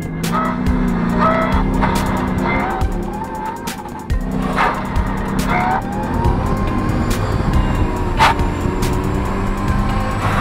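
Music mixed with a car driving hard: an engine running, with short squeals and a gliding whine over it.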